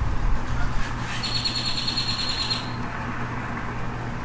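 A bird sings one rapid trill of high, evenly repeated notes lasting about a second and a half, starting about a second in, over a steady low hum.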